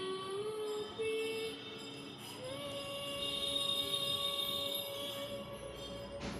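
Music with a melody of long held notes, one sliding up a little over two seconds in and held for about three seconds.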